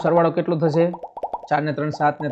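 A man's voice speaking Gujarati, with a short pause about a second in.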